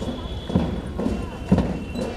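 A drum beating a slow, steady march time, one low thump about every second, for a procession walking in step, over crowd chatter.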